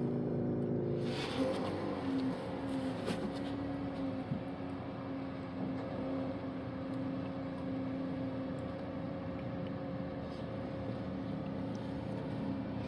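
Waste cooking oil being poured from a plastic jug through nested wire mesh strainers into a funnel, over a steady mechanical hum.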